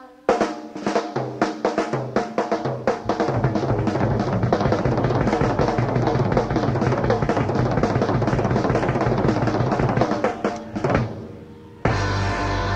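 Rock drum kit played alone in a live concert recording: a few scattered hits, then a fast, continuous roll around the snare and toms with bass drum underneath, breaking off about eleven seconds in.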